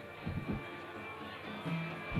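Live band playing a soft instrumental passage: plucked guitar and bass, with two low drum thumps about half a second in.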